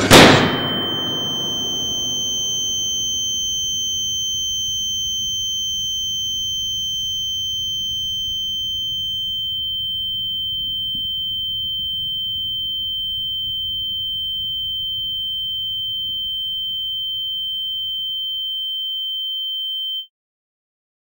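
A balloon bursts over a candle flame with one sharp bang, followed by a steady high-pitched ringing tone, like ears ringing after a blast, over a low rumble. A second, higher tone fades out about halfway through.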